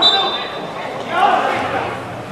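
A referee's whistle blown once, briefly, right at the start, over players' voices calling out on the pitch.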